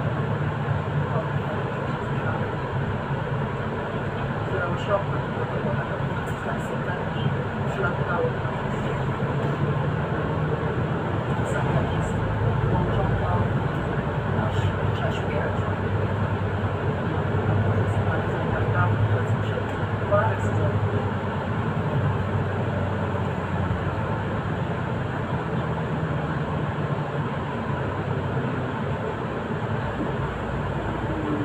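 A Solaris Urbino 8.9 city bus driving, heard from inside the cabin: a steady low running drone that swells and eases a little, over road noise with small scattered rattles and ticks.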